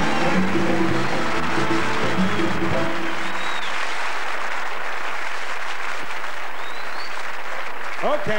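Live band music ends about three seconds in, and a large theatre audience applauds after it.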